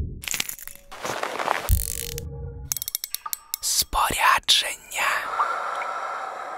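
Edited sound effects of a fishing reel's mechanism: a quick, uneven run of sharp mechanical clicks and cracks with whooshing noise between them, and a steady high tone through the second half.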